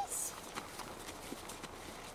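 Irregular crunching footsteps on packed snow from a person and a German shepherd puppy moving about together, with a short high-pitched squeak right at the start.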